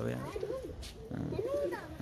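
Domestic pigeons cooing: two short coos, each rising and falling in pitch, one just after the start and one about three-quarters of the way through.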